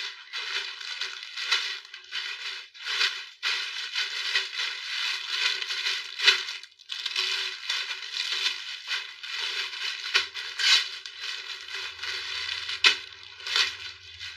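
Clear plastic garment bags crinkling and rustling as folded clothes are handled in and out of them, in a near-continuous run with short pauses.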